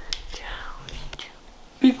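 Soft whispered voice with a few light clicks, then a loud voice starts just before the end.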